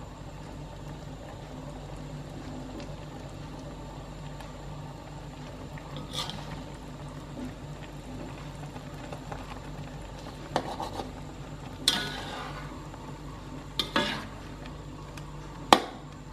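A metal spatula scrapes and knocks against a metal wok a handful of times, the sharpest knock near the end, while egg drop soup simmers in it over a gas stove with a low, steady background rumble. The beaten egg is still setting in the broth.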